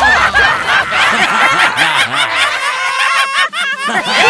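High-pitched, cartoonish snickering and giggling from several overlapping voices, each laugh a quick rise and fall in pitch, with a short break about three and a half seconds in.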